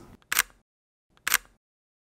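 Two camera shutter clicks about a second apart, each a quick, sharp snap.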